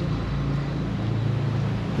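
A vehicle engine running steadily with a low hum, over a wash of wind and surf noise.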